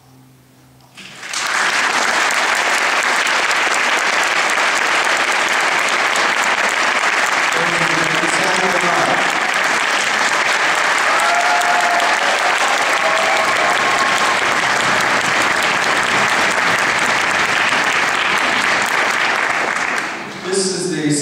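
Concert audience applauding in a large hall. It breaks out about a second in, as the orchestra's final low chord dies away, and holds steady and loud throughout, with a few voices calling out in the middle.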